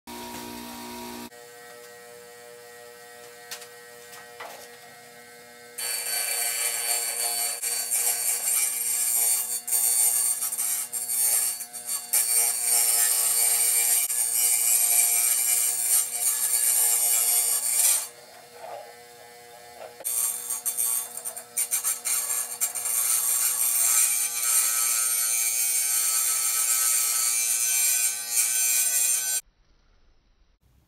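Small wet tile saw's motor humming steadily, then its blade grinding loudly into a glass bottle as the bottle is turned against it, in two long cutting passes separated by a brief return to the plain motor hum midway. The sound cuts off suddenly near the end.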